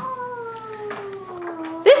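One long voice-like call, nearly two seconds, sliding slowly and steadily down in pitch.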